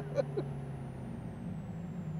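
Supercharged LT4 V8 of a 2017 Camaro ZL1 running at low revs while the car rolls slowly, heard from inside the cabin as a steady low hum.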